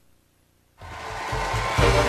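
A brief gap of near silence, then a rushing noise that swells steadily louder, with a few low thuds near the end, and cuts off suddenly.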